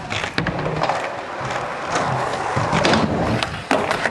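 Small hard wheels of a stunt scooter rolling over skatepark concrete and wooden ramps, with repeated sharp knocks and clacks of the deck and wheels hitting the surfaces.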